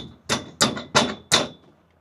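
Hammer striking steel scaffold fittings, four quick blows, each with a short metallic ring.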